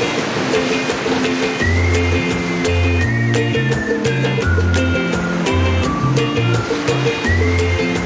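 Background music with a steady beat; a bass line comes in about two seconds in, under a high lead line that slides between held notes.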